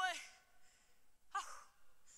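A woman's amplified voice holding a sung note with a wavering pitch that trails off just after the start, then one short vocal sound falling in pitch about a second and a half in.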